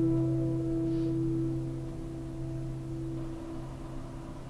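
Background music: a held piano chord ringing on and slowly fading away.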